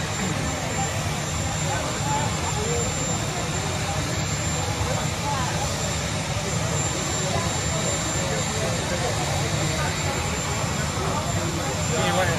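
Steady turbine engine noise of a helicopter running on the ground, under the chatter of a crowd.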